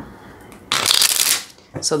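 A tarot deck being shuffled by hand: one short, crackling burst of cards flicking against each other, lasting under a second in the middle.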